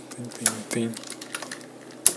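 Computer keyboard typing: a run of quick, uneven key clicks as code is entered, with a brief mumbled voice in the first second.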